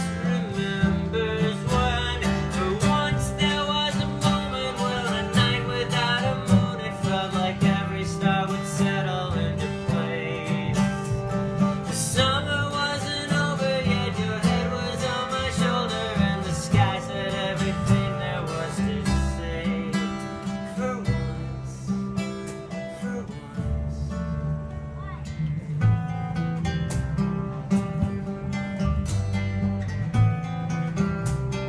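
Live acoustic folk band playing an instrumental passage: strummed acoustic guitar, plucked upright bass and a Yamaha keyboard.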